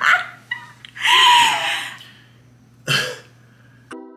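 A woman laughing loudly in breathy bursts; the longest and loudest, about a second in, is a squealing laugh, and a last short burst comes near the end.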